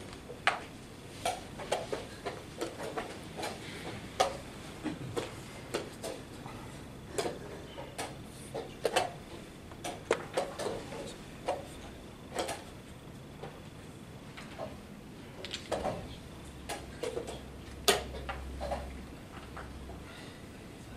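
Irregular sharp clicks and knocks of wooden chess pieces being set down and chess clocks being pressed at the many boards of a tournament hall, with the loudest knock a little before the end.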